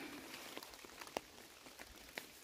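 Faint, scattered drips of fog water falling from the trees onto a nylon tarp overhead, with one louder drip just after a second in.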